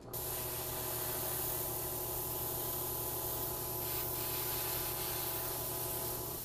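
Airbrush spraying paint: a steady, even hiss over a faint low hum that starts abruptly and holds without a break.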